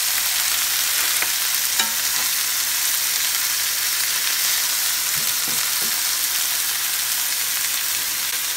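Chopped onion and browned pork tenderloin sizzling steadily in hot oil in a nonstick frying pan.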